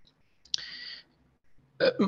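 A brief mouth noise from a speaker pausing mid-sentence: a click followed by about half a second of breathy noise, then speech resumes near the end.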